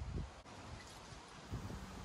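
Faint outdoor background noise, with a couple of soft low bumps at the very start and again faintly near the end.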